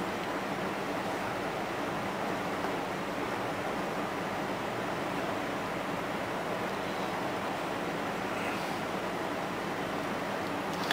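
Steady, even hiss of background noise with no events in it.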